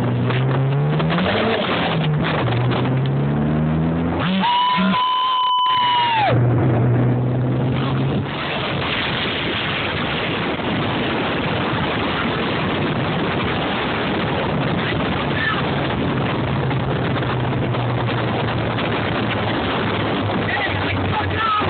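Turbocharged four-cylinder of a 1998 Mitsubishi Eclipse GST, heard from inside the car, revving hard and climbing in pitch through a gear change under full-throttle acceleration. A steady high tone sounds for about two seconds, about four seconds in. After that the engine settles to a steady note under loud wind and road noise.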